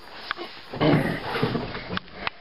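A man's rough grunt of effort, about a second long, as he climbs into a Jeep, after a light knock.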